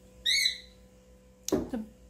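A single short, high-pitched chirp, about a third of a second long, a little after the start. Under it is the faint, steady hum of a small electric fan.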